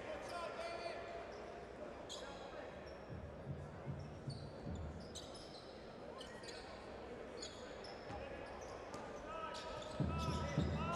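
Basketball court sounds: sneakers squeaking on the hardwood floor in many short, high chirps, and a ball bouncing, over the low murmur of the arena crowd and players' voices.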